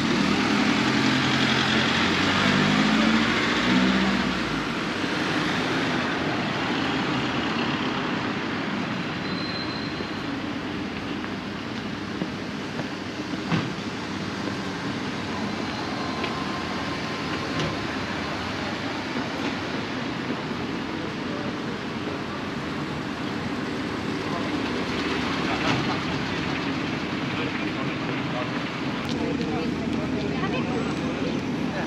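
Town street traffic: a car engine close by accelerates through the first few seconds, then the steady noise of cars passing on the road goes on, with a single sharp click about halfway through.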